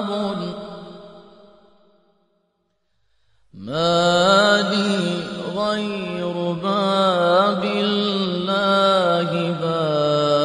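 A man's voice chanting a mournful lament in long, wavering melismatic phrases. It fades out over the first two seconds, there is about a second and a half of silence, then the chant comes back abruptly and carries on.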